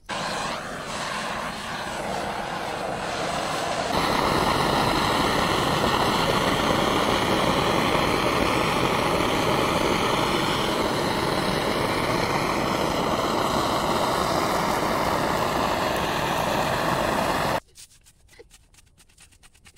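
Handheld butane canister blowtorch burning with a steady hissing roar as its flame singes the hair off a cow's head. It gets louder about four seconds in and cuts off suddenly near the end.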